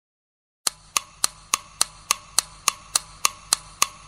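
Intro sound effect: a steady run of sharp, woody clicks, about three and a half a second, starting about two-thirds of a second in.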